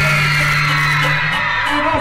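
Amplified live band holding one long chord over a steady low bass note. The bass note drops out a little past halfway.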